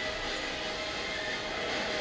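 Action-film trailer soundtrack playing from a speaker: a steady rumbling drone with a held tone running through it.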